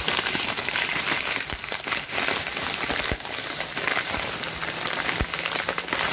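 Thin plastic carrier bags rustling and crinkling continuously as a hand rummages through them close to the microphone.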